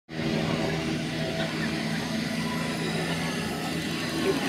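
A steady engine hum, with people talking in the background.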